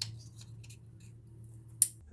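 A few faint plastic ticks, then one sharp click near the end as an ignition coil pack's electrical connector is pushed on and snaps into place.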